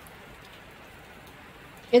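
Steady rain falling on a sheet-metal gazebo roof, an even hiss. A voice starts speaking at the very end.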